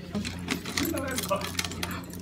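A bunch of keys jangling, with light irregular clicks and clinks, over a steady low hum.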